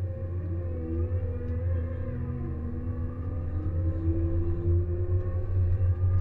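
Cat K-series small wheel loader running, a steady low drone with whining tones that slowly rise and fall, as it coasts down a grade in ice mode with very little engine braking.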